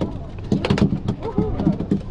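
Indistinct talk from people close by, with a few sharp clicks and knocks.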